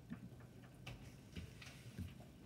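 Near silence with a few faint, irregularly spaced ticks or clicks.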